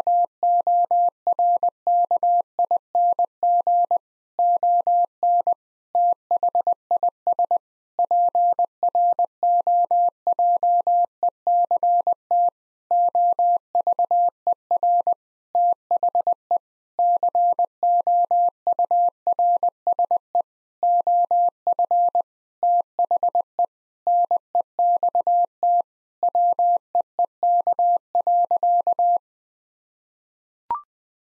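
Computer-generated Morse code at 20 words per minute: a single steady mid-pitched tone keyed on and off in rapid dots and dashes with short gaps between words. It sends a sentence ending "be working on this project over the course of the next week" and stops about a second before the end.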